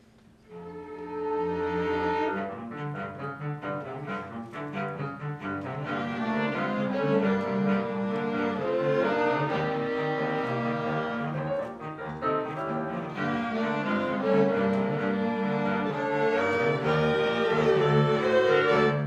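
Chamber orchestra of violins, cello and flutes starting an upbeat piece about half a second in. It opens with a held chord, then moves into quick repeated notes and grows louder.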